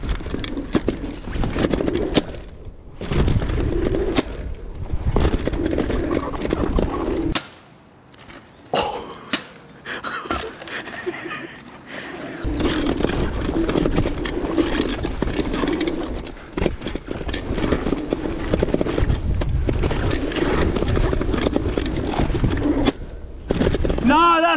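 A DIY electric mountain bike riding a dirt-jump line: knobby tyres rolling and scrubbing on packed dirt, with rattles and knocks from the bike. There is a brief lull about seven seconds in, followed by a knock.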